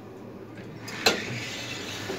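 Sigma elevator car doors opening, with one sharp metallic clack about a second in. After it the surrounding hall noise comes in louder.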